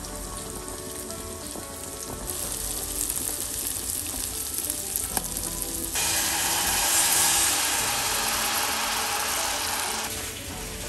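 Pot of new potatoes bubbling at a rolling boil. About six seconds in, a louder steady sizzle as liquid is poured into a hot pan of browned capers and herbs for a herb sauce.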